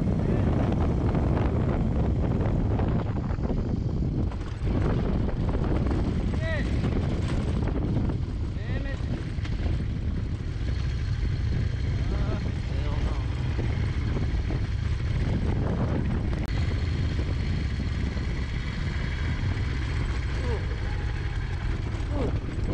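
Harley-Davidson Low Rider S V-twin running steadily at cruising speed, with wind rushing over the microphone.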